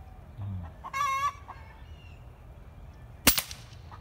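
A chicken calls once, briefly, about a second in. A little past three seconds comes the single sharp crack of an Artemis P15 .22 bullpup air rifle firing, the loudest sound here.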